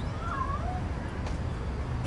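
A cat meows once, briefly, soon after the start, over a low steady rumble.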